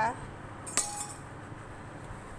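A steel spoon clinks once against a small metal tempering pan, a sharp tap with a short ring after it.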